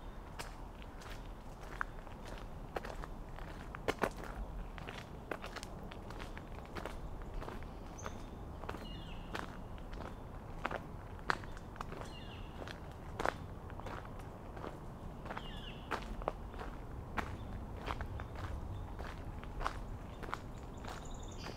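Footsteps on a wet gravel path at a steady walking pace.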